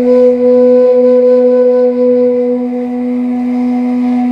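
Caval, the Romanian end-blown shepherd's flute, holding one long melody note that fades near the end, over a steady low drone.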